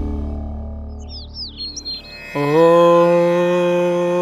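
The tail of the preceding eerie music fades away. About a second in, a bird chirps a few quick rising and falling calls. Just past halfway, a steady drone note with strong overtones starts suddenly and holds.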